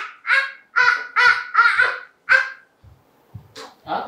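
A toddler shouting: about five short, high-pitched yells in quick succession, then a pause.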